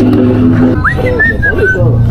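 Background music with a steady bass line stops about three quarters of a second in, followed by whistling: a quick rising whistle, then a few short high notes stepping slightly downward.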